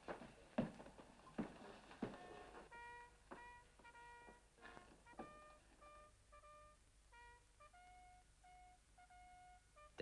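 Faint background music: a soft melody of short, separate notes on a wind instrument, coming in about three seconds in. It follows a few faint knocks at the start, likely footsteps on stairs.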